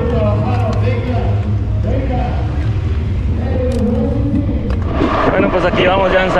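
Spectators' voices and chatter from a roadside crowd, over the low rumble of wind and motion on a bike-mounted camera. About five seconds in, the wind noise gets louder as the bike picks up speed on open road.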